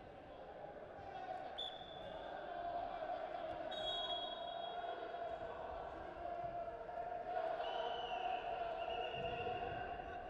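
Wrestling arena sound: indistinct voices calling out, with dull thumps as two freestyle wrestlers hand-fight and tie up on the mat. A few brief thin high tones cut through.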